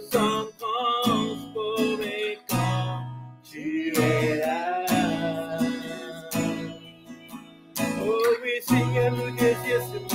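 Acoustic guitar strummed as accompaniment to a woman and a man singing together.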